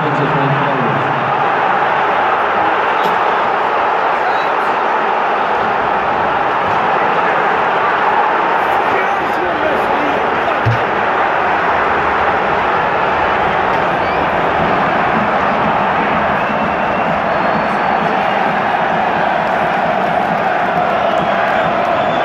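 Large football stadium crowd cheering, a dense, steady roar of thousands of supporters celebrating a goal.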